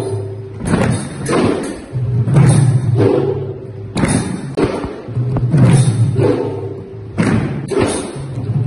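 An ensemble of khol, Assamese two-headed barrel drums, played together by hand. Deep bass strokes alternate with sharper ringing strokes in a drumming phrase that repeats about every three seconds.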